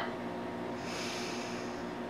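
A single soft breath through the nose, a faint hiss lasting about a second from near the middle, over a low steady room hum.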